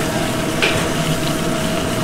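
Wine-and-vegetable braising liquid sizzling and bubbling in a sauté pan over a gas flame, stirred with a metal ladle, over a steady hum. A brief faint scrape comes about half a second in.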